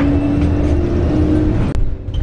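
A moving city bus heard from inside the cabin: the engine and drivetrain give a low rumble and a steady hum that steps up in pitch about a second in. A short sharp click comes near the end.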